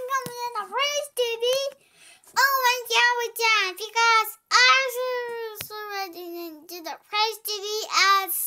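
A child singing wordless phrases in a high voice, with a short pause about a second in.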